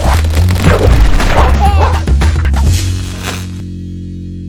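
Loud outro music with a heavy bass beat and crashing hits. About three and a half seconds in it ends on a held chord that fades.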